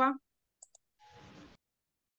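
Two faint, quick clicks about half a second in, then a brief soft hiss, just after a voice trails off at the very start.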